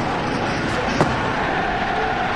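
Steady outdoor background noise of a football ground picked up by the commentary microphone, with one sharp click about a second in.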